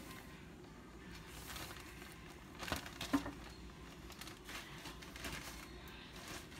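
A hand squeezing and mixing flaked canned salmon in a plastic bowl, working in the seasoning: faint soft squishing, with a couple of sharper clicks about halfway through.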